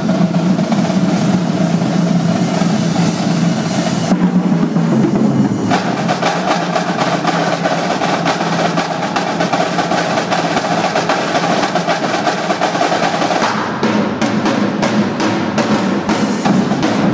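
Marching drumline playing a fast, continuous cadence on snare drums, tenor drums and bass drums with crash cymbals. The cymbals drop out briefly about four seconds in, then return with the full battery.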